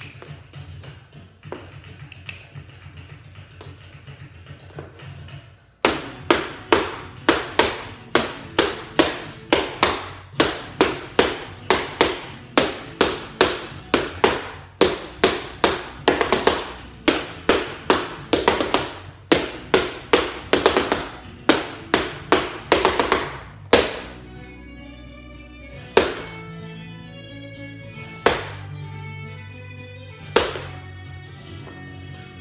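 Rumba flamenca guitar music with sharp, evenly spaced percussive strikes, about two a second: the dancer's flamenco shoes tapping the floor over strummed chords. The strikes start about six seconds in and stop about three quarters of the way through. After that, single guitar notes ring with only a few isolated taps.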